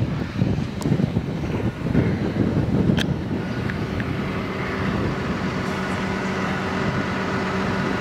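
A tractor engine running steadily, with wind buffeting the microphone in the first couple of seconds and a sharp click about three seconds in.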